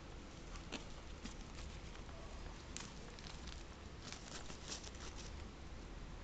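Faint rustling and crinkling of cloth and gauze dressing being handled, with a scatter of small clicks that is busiest about four to five seconds in.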